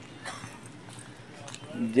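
Footsteps on wet ground scattered with loose bricks: a few faint knocks over a low background hiss. A man starts speaking at the very end.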